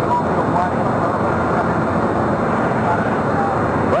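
Heavy farm machinery running steadily close by: a dense, unbroken engine noise with faint voices under it.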